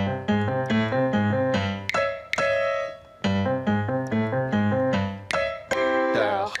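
Instrumental interlude of a children's song on a piano-sounding keyboard: a bouncy melody of short notes over a bass line, with a brief pause about three seconds in.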